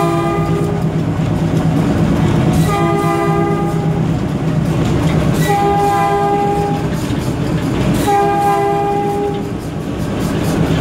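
Air horn of a Baldwin RS-4-TC diesel locomotive sounding a series of blasts of about a second and a half each: one ending just after the start, then three more about every three seconds. The diesel engine runs steadily underneath, heard from inside the cab.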